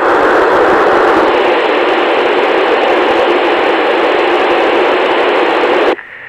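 Steady hiss of FM radio noise from a Yaesu FT-897D receiver tuned to the ISS downlink, with no signal on the channel between the station's transmissions. It cuts off abruptly at the very end.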